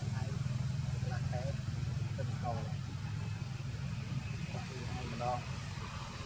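Faint voices of people talking a short way off, a few words at a time, over a steady low rumble.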